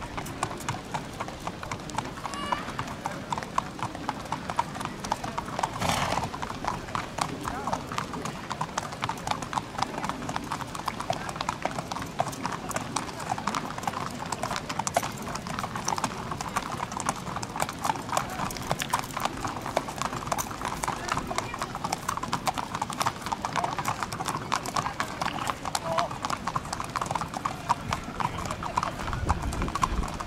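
Racehorses walking on a paved path, their hooves clip-clopping in a continuous stream of footfalls from several horses at once.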